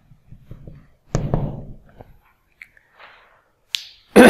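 Whiteboard marker squeaking and tapping on the board as a short heading is written, in a few brief irregular strokes, with a sharp click near the end.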